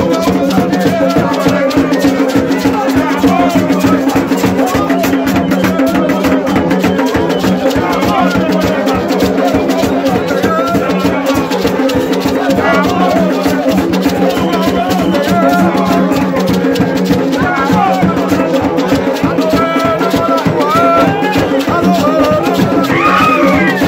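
Dominican gagá music: a maraca shaken rapidly over drums, two steady low notes droning underneath, typical of gagá bamboo trumpets, and a man singing call-style lines that get louder near the end.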